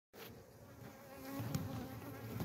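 Honeybees buzzing faintly around an active hive, one bee's hum growing louder about a second in as it comes close.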